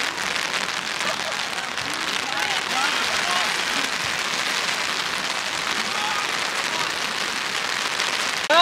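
Steady rain falling, an even hiss.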